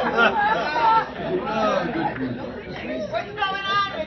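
Overlapping chatter in a large hall, with several people talking at once. A high-pitched voice rings out briefly near the end.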